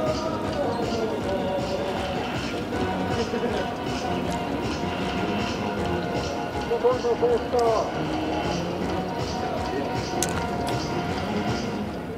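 Sports venue ambience: a low murmur of spectators under faint sustained background music, with a voice briefly heard about seven seconds in.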